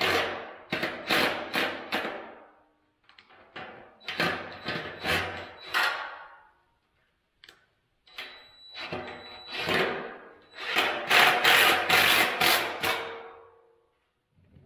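Cordless drill/driver driving screws to fasten a galvanized sheet-steel predator guard to a wooden post. It comes in three bursts of rapid sharp strikes, the last and loudest near the end.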